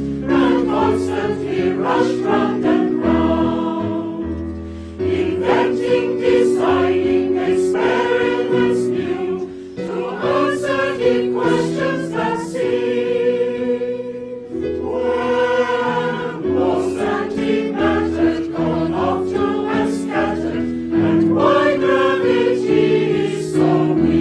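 A choir singing a slow song in sustained chords, with short breaks between phrases every few seconds.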